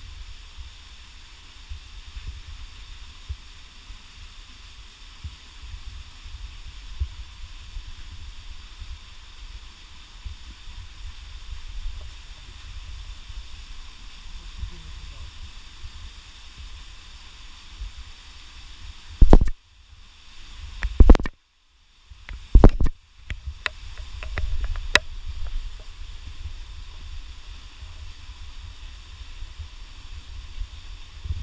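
Low rumble of wind and handling noise on a camera carried up a rocky slope, over a steady hiss. About two-thirds of the way through comes a cluster of very loud knocks on the microphone, with the sound cutting out briefly between them.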